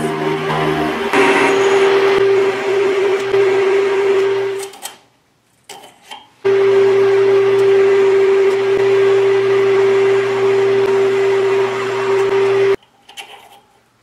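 Metal lathe running and turning a metal shaft into a punch, a steady whine from the drive with the hiss of the cut. It stops after about five seconds, starts again a second and a half later and cuts off sharply about a second before the end, leaving only faint handling sounds.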